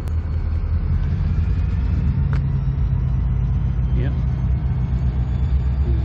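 Diesel switcher locomotive running, a steady low rumble as it begins to back up.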